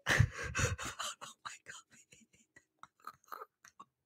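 A short spoken exclamation, then soft, irregular mouth clicks and breaths close to a microphone.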